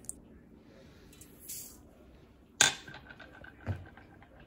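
Chia seeds tipped from a stainless steel measuring spoon into a stainless steel mixing bowl: a short hiss, then a sharp metallic tap of the spoon on the bowl that rings on briefly. A soft thump follows near the end.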